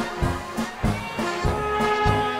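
A live brass band playing a polka: brass holding sustained notes over a steady oom-pah beat in the bass.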